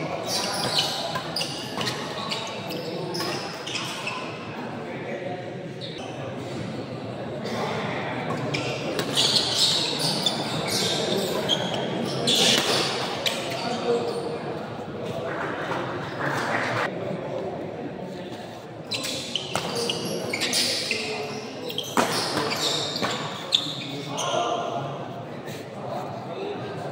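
Badminton doubles rally: rackets striking the shuttlecock and players' shoes hitting the court in short sharp knocks, over a constant hubbub of spectators' voices in a large hall.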